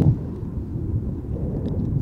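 Wind buffeting an outdoor microphone: a steady, low rumbling noise with no distinct events.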